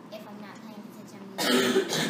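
A person clears their throat loudly in one short burst, about one and a half seconds in, over faint background voices.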